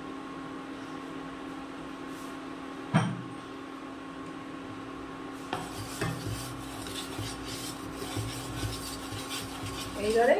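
A wooden spatula scrapes and stirs ghee around a ceramic-coated kadai from about halfway through, over a steady hum from an induction cooktop. A single sharp knock about three seconds in is the loudest sound.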